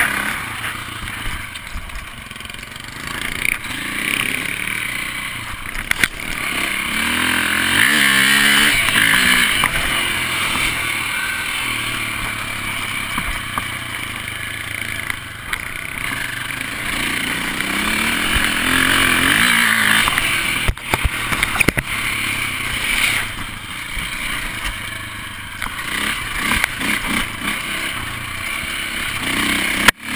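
KTM dirt bike engine running under changing throttle, revving up in rises along a rough trail, with wind rushing over the microphone and a few sharp knocks from the bike hitting bumps.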